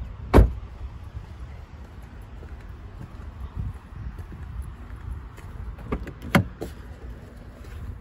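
A car door shut with one solid slam about half a second in, over a steady low rumble. Near the end a few sharp clicks of a door handle and latch as the driver's door is opened.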